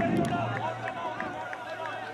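Indistinct voices of players and spectators calling out around an outdoor football pitch, over a steady low hum.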